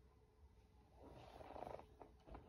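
Near silence: quiet room tone, with one faint, short rushing sound about a second in.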